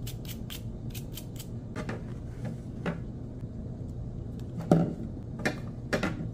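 A small cleaning brush scraping and clicking inside the blade housing of a Wahl Detailer trimmer, working out packed hair that oil has made sticky. There are scattered light scrapes and a few sharper clicks near the end, over a steady low hum.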